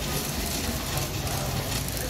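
Steady rumble and hiss of luggage wheels rolling over a hard stone floor.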